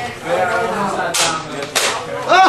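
Two sharp plastic clacks about half a second apart as a toy foam-dart blaster's priming slide is worked after a call to reload, with a voice under them.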